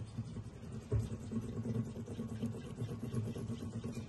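A bar of soap rubbed back and forth over a taut silkscreen mesh laid on lace, a low scrubbing rumble that starts with a light bump about a second in and keeps going.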